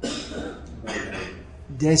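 A man clearing his throat twice, once right at the start and again about a second in, each a short harsh rasp.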